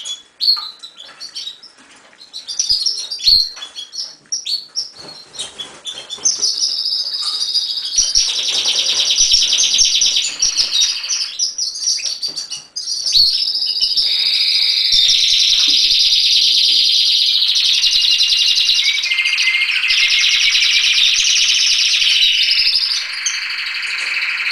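Caged domestic canaries singing: scattered short chirps and calls at first, then from about six seconds in a continuous loud song of rapid trills and rolls from several birds overlapping.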